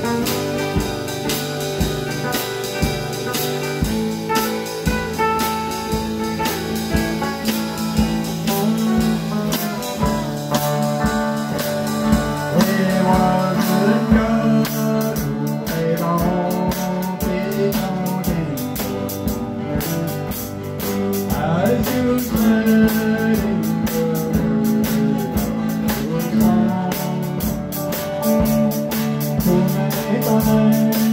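Small live band playing: strummed acoustic rhythm guitar, a lead electric guitar with bent, gliding notes, and a drum kit keeping a steady beat.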